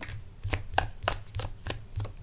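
A deck of oracle message cards shuffled in the hands: a quick, irregular run of card slaps and flicks, several a second.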